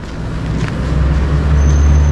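A motor vehicle's engine on the street, a low steady hum growing louder as it comes closer.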